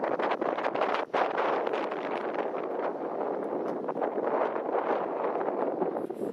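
Wind buffeting the camera's microphone: a steady rough rushing noise with small crackles and knocks running through it, briefly dropping out about a second in.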